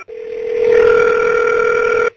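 Telephone ringback tone over the phone line: one steady ring of about two seconds as the call is put through to an agent.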